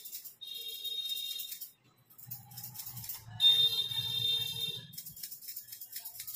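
Hairdressing scissors snipping hair in quick clicks near the start and again near the end. Between them, a high, steady ringing tone sounds twice, the second time longer and louder, with a low hum under it.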